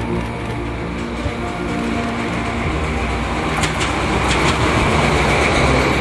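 Italian FS D343 diesel-electric locomotive hauling a sleeping car passes close by: the engine and running noise build to a steady rumble, with a few sharp clicks of the wheels over the rails about four seconds in.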